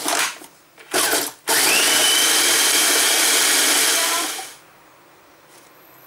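Electric food processor grinding oven-dried celery into powder. A short pulse comes about a second in, then a run of about three seconds whose motor whine rises and levels off before it winds down.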